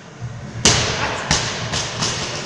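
Loaded barbell with bumper plates dropped onto the gym floor: one loud crash, then two smaller bounces coming closer together, each ringing out in a reverberant hall.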